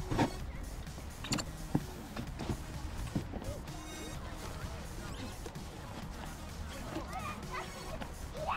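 Snowboard binding ratchet straps being fastened: a few sharp clicks in the first two seconds, over a steady low rumble and background music.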